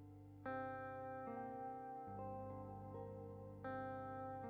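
Gentle instrumental background music: chords that ring out and fade, with a new chord struck about half a second in and another near the end.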